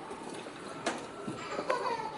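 Ice hockey rink sounds: sharp clacks of sticks and puck on the ice, about a second in and again near the end, over a background of spectators' voices.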